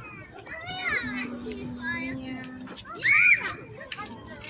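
Children's voices calling out at play, high and shifting in pitch, with one loud high shout about three seconds in.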